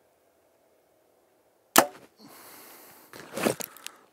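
A Hoyt VTM 34 compound bow being shot: one sharp, loud snap of the string and limbs on release, about two seconds in. About a second and a half later comes a second, rougher burst of knocks and rustling.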